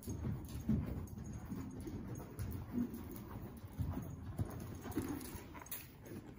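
Horse's hooves thudding dully on the soft sand-and-dirt footing of an indoor arena at a lope, the beats easing off and stopping as the horse comes to a halt near the end.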